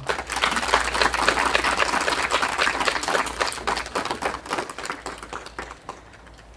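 Audience applause: many separate hand claps in quick succession, dying away near the end.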